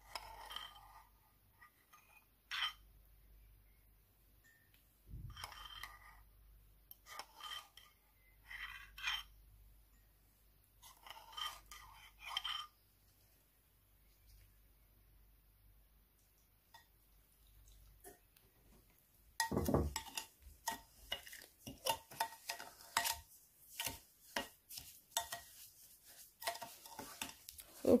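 A metal spoon clinking and scraping against bowls: scattered clinks in the first half, then, from about two-thirds of the way in, a busier run of scraping as the spoon stirs gritty coffee grounds and sugar in a glass bowl.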